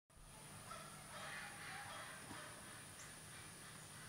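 Near silence: faint outdoor background with faint distant bird calls.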